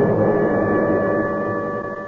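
A held, steady tone of a few pitches over a faint hiss, starting abruptly and sustained unchanged: a sound-effect or music bridge marking a change of scene in a radio drama.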